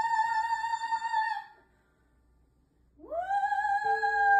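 Solo female voice singing a musical-theatre song: a high note held with vibrato fades out about a second and a half in. After a pause of near silence, she scoops up into a new sustained note near the end.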